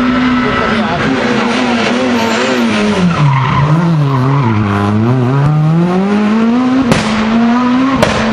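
Renault Clio rally car's engine at high revs, then falling in pitch with wavering revs as it slows and shifts down for a tight bend, then climbing steadily as it accelerates away. A single sharp crack comes about seven seconds in.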